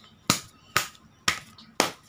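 Four sharp snaps, evenly spaced about half a second apart.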